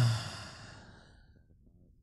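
A man's soft laugh running into a long breathy sigh that fades away over about a second and a half.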